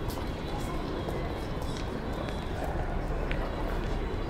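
City street ambience: indistinct voices of people on the street over a steady low rumble of city noise, with a few small sharp clicks.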